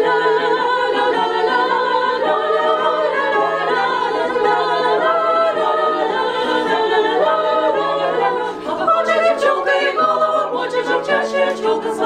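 Small female vocal ensemble singing in close harmony, several voices on sustained chords. About eight and a half seconds in there is a brief drop, after which the notes turn shorter and more clipped.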